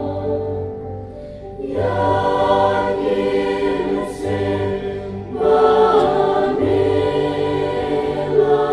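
Church choir singing a hymn together. There is a brief break between phrases about a second in, and the singing grows fuller and louder from about five and a half seconds.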